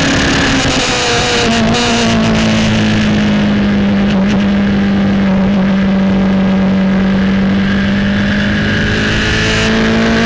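Onboard engine note of a Norma MC20F sports prototype, over heavy wind and road noise. About a second in, the pitch drops as the car slows and shifts down from sixth to fourth. It holds fairly level through a long corner, then rises again near the end as the car accelerates out.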